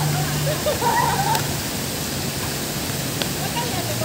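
Tiered outdoor fountain's water jets splashing into the basin, a steady rushing hiss, with indistinct voices of passers-by over it.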